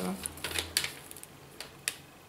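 Packaging of a small bookmark pad being handled and picked at by hand to open it: several separate light clicks and taps, the sharpest near the end.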